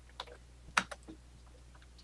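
A few keystrokes on a computer keyboard, the loudest about three-quarters of a second in.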